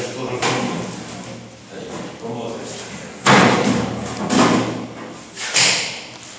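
Several people's voices talking in a large room, with three loud, sudden sounds in the second half.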